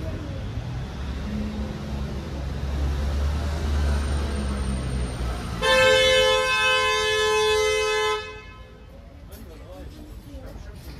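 A passing motor vehicle's low rumble builds, then a vehicle horn sounds one long steady blast of about two and a half seconds, its pitch dipping slightly partway through, and cuts off suddenly.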